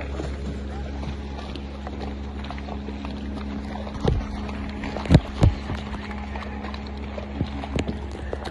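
Steady low hum of a boat engine running, with a few sharp knocks or thumps about four and five seconds in and again near the end.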